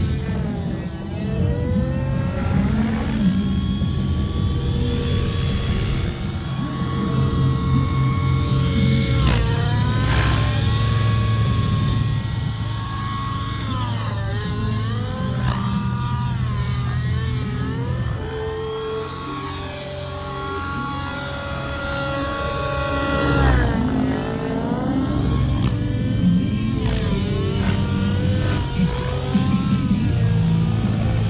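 Nitro RC helicopter (Align T-Rex 700N with an OS 91 glow engine) flying, its engine and rotor note swooping down and back up several times as it manoeuvres and passes. Rock music plays along with it.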